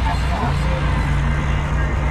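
Ventrac compact tractor running steadily under load, its front Tough Cut brush deck spinning as it is pushed into brush and saplings.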